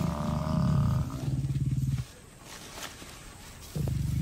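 Lions growling low and rough while attacking a Cape buffalo. The growling stops about halfway through and starts again just before the end.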